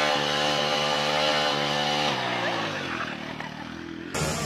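Motorcycle engine running at a steady speed, then falling in pitch about two seconds in as it slows off the throttle.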